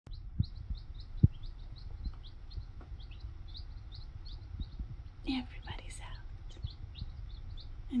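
A brood of baby chicks peeping continuously: short, rising high peeps, several a second. Soft low taps are scattered through, the loudest about a second in.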